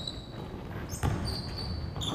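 A basketball bouncing on a hardwood gym floor during a scrimmage, with a thud about a second in and short high squeaks of sneakers on the court.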